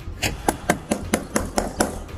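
Rapid, even knocking on a car's side window, about eight knocks at roughly four a second, to rouse a driver asleep at the wheel.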